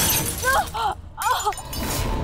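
Dramatic TV-serial sound-effect sting over reaction shots: a sudden crash like shattering glass at the start, followed by two short pitched tones that arch up and down, about half a second and a second and a quarter in.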